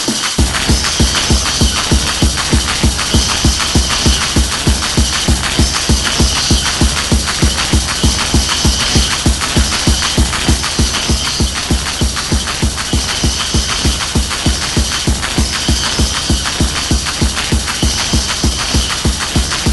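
Early-1990s hardcore techno (gabber) from a DJ mix: a fast, steady kick drum comes in right at the start, under a constant high-pitched synth layer.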